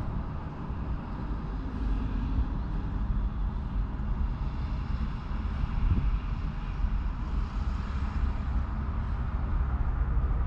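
Steady low rumble of a parked vehicle's engine idling, heard from inside the cabin.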